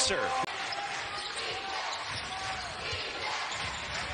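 A basketball being dribbled on the court, a few low bounces about half a second apart, over the steady noise of an arena crowd.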